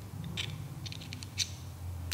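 A few faint, light clicks from the metal parts of a TRM Shadow folding knife as they are handled and fitted back together in the handle, over a low steady hum.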